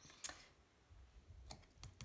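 Faint clicks and soft taps of paper oracle cards being handled against the deck on a table, a few small ticks near the end.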